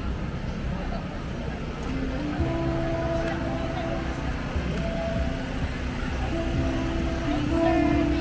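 Outdoor market crowd chatter over a low, steady rumble. About two and a half seconds in, music begins: a slow melody of long held notes stepping from pitch to pitch.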